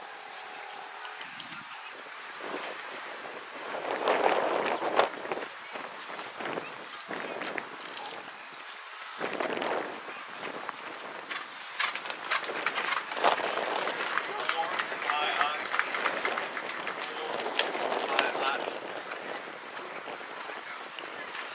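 Indistinct voices that come and go in swells, with many scattered short clicks and knocks.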